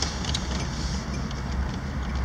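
Steady low rumble of a car's engine and tyres heard from inside the cabin as it rolls slowly, with a few faint clicks about a third of a second in.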